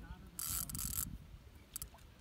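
Fishing reel being cranked in one short burst of whirring about half a second in, reeling in a hooked fish.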